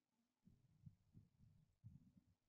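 Near silence: room tone with a few faint, soft low thumps.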